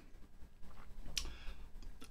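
A computer mouse clicking: one sharp click about a second in and a fainter tick shortly after, over a low room hum.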